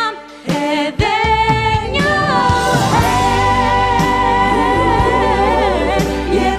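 A female singer singing a pop ballad in Albanian over band accompaniment. The music drops away briefly just after the start, then comes back in full with the voice holding long notes.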